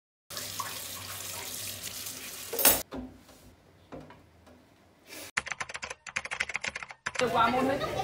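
Water running from a kitchen tap into a stainless-steel sink during dishwashing, a steady splashing that ends with a louder gush. Later comes a quick run of short scratchy strokes, followed by people talking near the end.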